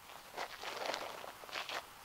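Shoes scuffing and crunching on gravel as a person shifts their feet and steps, a few short, faint crunches.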